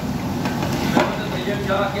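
A long metal ladle stirring chunks of meat in a large cooking pot on a gas burner, knocking against the pot twice, about half a second and a second in, over a steady hiss of cooking.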